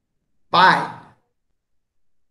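Speech only: a man's voice says one short word about half a second in, with silence around it.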